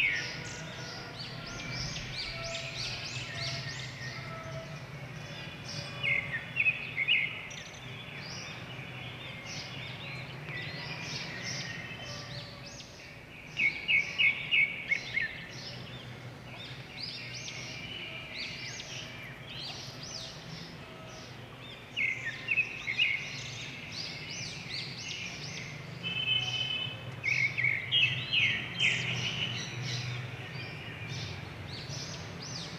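Small birds chirping, in several bursts of quick, high, repeated chirps with gaps between them, over a steady low hum.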